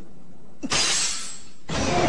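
Anime sound effect of a sudden harsh, hissing hit about two-thirds of a second in, lasting about a second, over background music.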